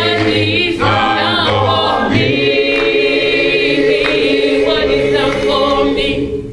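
Small gospel vocal group of men and women singing in harmony, unaccompanied, with several short phrases and then a long held chord from about two seconds in.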